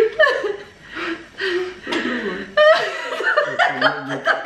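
A man and a woman laughing together in bursts, breathy chuckles and cackles, with the loudest burst a little past halfway.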